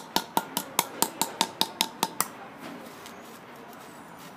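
Small hammer tapping a metal cylinder into the soil to take a soil core: quick light metallic taps, about five a second, that stop a little over two seconds in.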